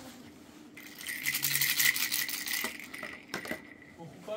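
Plastic baby-walker activity toy being rattled and clicked by a toddler's hands. A dense, rapid rattle lasts about two seconds, then a few single clicks follow.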